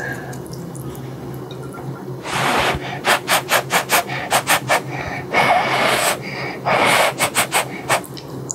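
Close-miked slurping of spicy ramen noodles. There is soft chopstick handling at first. About two seconds in comes a long slurp, then quick short sucks about five a second, two more long slurps and another quick run of sucks near the end.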